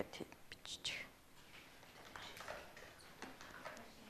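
Quiet classroom: faint whispered voices in the first second, then a low hush with a few small clicks and rustles.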